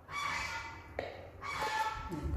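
A young macaque giving two high, whimpering coo calls, each under a second long. A single light click comes between them, about a second in.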